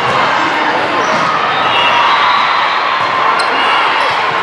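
Busy indoor volleyball tournament din: many voices chattering at once, with volleyballs bouncing and being hit on the surrounding courts.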